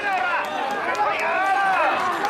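Mikoshi bearers chanting and shouting together as they heave the portable shrine along, many voices overlapping in rising and falling calls without a pause.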